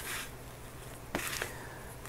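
Faint rustling and crunching of dry sphagnum moss and perlite being pushed in by hand around orchid roots, with a short sharp click a little over a second in.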